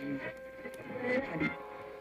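Faint film soundtrack playing from a monitor: soft dialogue fragments over quiet sustained music.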